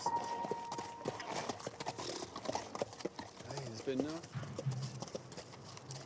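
Hooves of two horses walking on a path, a steady, uneven clip-clop of many light strikes. A person's voice is heard faintly about halfway through.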